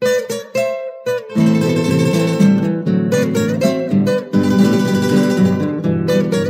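Instrumental music on plucked acoustic guitars: a few single picked notes, then, about a second in, a fuller strummed accompaniment with bass notes under the melody. It is the opening of a Latin American Christmas song.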